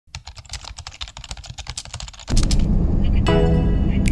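A rapid run of light clicks, like typing, for a little over two seconds, then a sudden loud low rumble as background music starts and carries on to the end.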